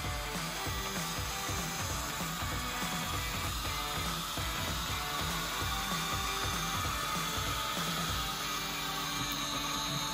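Stepper motors of a Modix 120X large 3D printer driving the gantry and print head to their home position during auto-homing, a steady mechanical sound, with background music under it.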